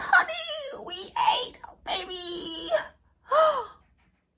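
A woman's excited, sing-song cries and whoops, no clear words, running for about three seconds, then one short call that rises and falls.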